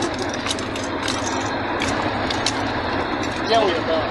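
Military vehicle driving fast over rough, muddy ground, heard from inside the cab: steady engine and road noise with scattered knocks.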